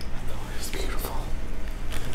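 Reformed gym chalk being crushed and crumbled by hand, giving an irregular run of dry crackles and crunches.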